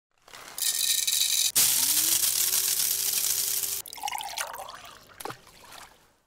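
Coffee poured into a mug as an intro sound effect: a steady pour whose pitch rises as the mug fills, stopping abruptly about four seconds in. Fading splashes and a short click follow.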